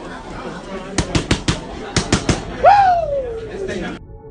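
Boxing gloves smacking into focus mitts in two quick combinations, four punches then three, followed by a long high cry that falls in pitch.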